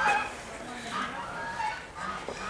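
A few short, high animal calls, each gliding slightly up or down in pitch.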